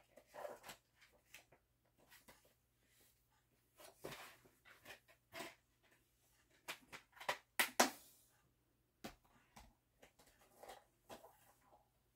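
Quiet handling of a plastic disc case and its paper booklet: scattered rustles and light clicks, with a cluster of sharper clicks about eight seconds in.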